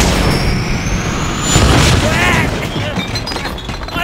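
Movie-trailer soundtrack: music with deep booms, and a thin rising high whine over about the first second and a half.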